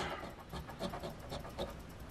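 A coin scraping the scratch-off coating from a lottery ticket, a faint run of short rubbing strokes, about three or four a second.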